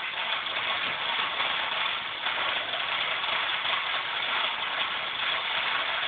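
Radio-controlled toy Mater tow truck giving off a steady, engine-like running noise without a break.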